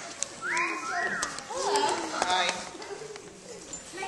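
Indistinct voices of a theatre audience talking among themselves, with a couple of high rising-and-falling voice calls about half a second and a second in, and scattered small knocks.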